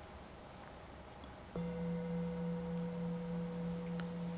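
A metal singing bowl struck once about one and a half seconds in, then ringing on steadily with a low tone and a higher overtone, marking the end of a short silent meditation.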